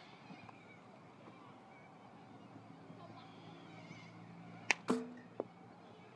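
A baseball bat hitting a front-tossed ball: a sharp crack about three-quarters of the way through, followed a moment later by a louder crack that rings briefly.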